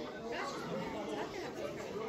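Background chatter: several people talking at once, indistinct and with no clear words.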